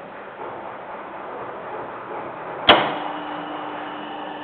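A relay contactor in a GSM remote-control box snapping shut with one sharp click about two-thirds of the way in, switching on an electric motor with a bladed fan, which then starts up and runs with a steady hum.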